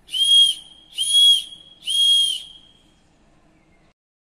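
Three loud, steady blasts on a blown whistle, about one a second, each with a breathy hiss around a single high tone.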